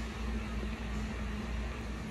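Steady low hum with a faint even hiss: room tone with a machine-like drone, such as a fan or air handling.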